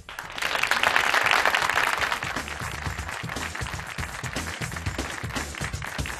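Applause over closing theme music: a dense patter of hand clapping that starts suddenly and is loudest in the first two seconds, then carries on a little softer, with the music's steady bass line underneath.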